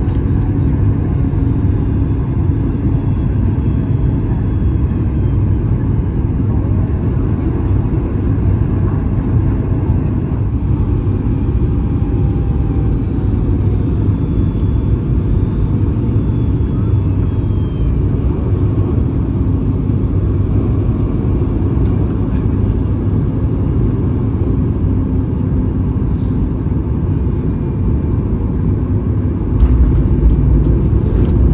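Steady cabin rumble of engine and airflow heard from a window seat over the wing of a Boeing 737 MAX 8 on final approach, its CFM LEAP-1B engine at approach power. Near the end the rumble jumps suddenly louder as the wheels touch down on the runway.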